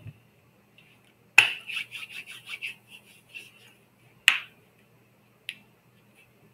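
Keyboard typing: a sharp click about a second and a half in, then a quick run of light key taps, and another single click a little past four seconds.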